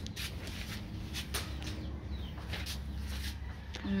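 Quiet outdoor ambience: a steady low rumble with scattered short clicks and rustles, and a faint falling chirp about two seconds in.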